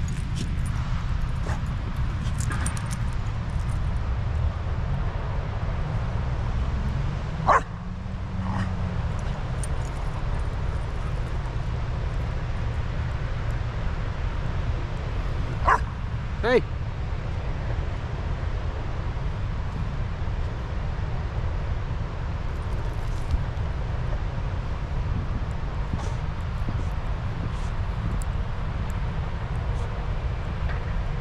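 Shar Pei dog giving a few short, sharp barks: one about a quarter of the way in and two close together around the middle, over a steady low rumble.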